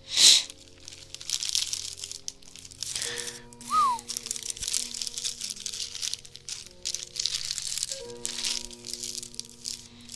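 Crinkling and rustling as a plastic bag of fly-tying material is handled, in irregular spurts, over soft background music with long held notes; a short louder rush of noise opens it.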